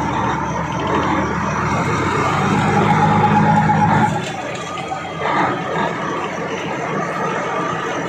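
Truck engine heard from inside the cab, pulling under load as the trainee drives off. The engine note strengthens, then falls off sharply about four seconds in.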